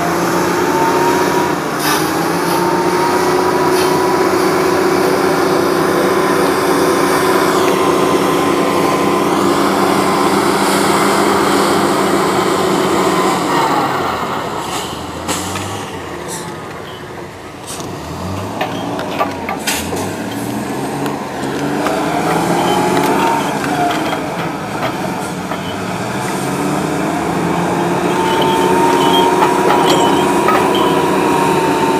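A small engine running at a steady high pitch. About halfway through it eases off, its pitch sliding low and wavering with a few sharp clicks, then it speeds back up near the end.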